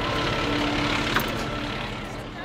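A Pierce fire engine's diesel engine idling steadily, under a steady low hum that fades out near the end.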